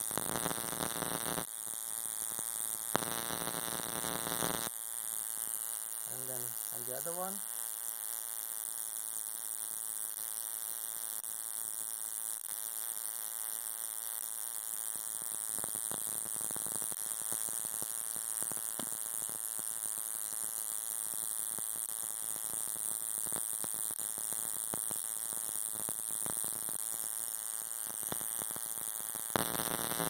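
Spark plugs firing continuously from a bench igniter fitted with a capacitor ignition booster: a rapid buzzing crackle of high-voltage sparks over a steady high-pitched whine, louder and harsher in two short stretches in the first few seconds.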